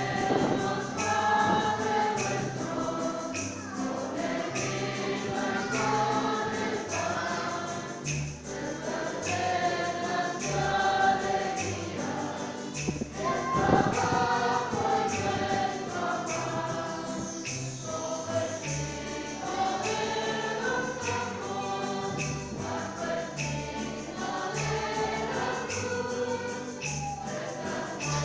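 Choir singing a church hymn with instrumental accompaniment and a stepping bass line underneath. One brief thump stands out about halfway through.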